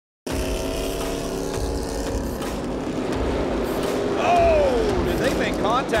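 Dirt-track race car engines running at speed in a steady drone. About four seconds in, one engine's note falls steadily in pitch as it slows or passes.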